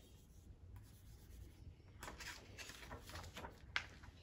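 A fingertip rubbing on the paper page of a picture book, faint swishing strokes that begin about halfway through, with a single sharp tick near the end.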